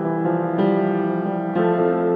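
Solo piano improvisation: held chords ringing, with new chords struck about half a second in and again about a second later.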